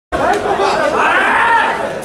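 Chatter of many voices echoing in a large hall. About halfway through, one voice rises above the rest in a long call that climbs and then falls.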